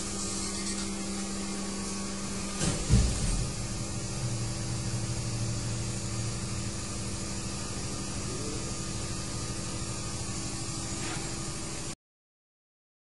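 Machinery running with a steady hum and hiss. Just under three seconds in comes a sudden loud double clunk, followed by a lower hum for a few seconds.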